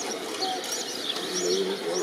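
Small birds chirping: repeated short high chirps, about three a second.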